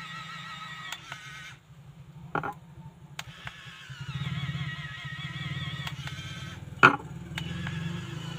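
3D printing pen's filament feed motor running, a low hum with a wavering whine, which stops for about a second and a half early on and then starts again. Two sharp clicks, the louder one near the end.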